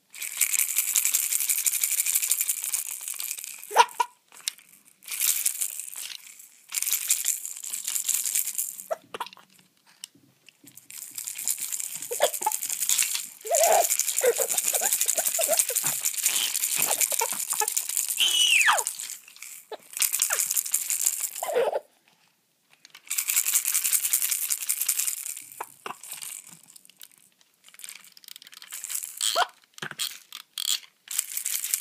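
A baby's plastic toy rattle shaken in spells of a few seconds, with short pauses between. Short baby coos and a rising squeal come between and under the shaking in the middle.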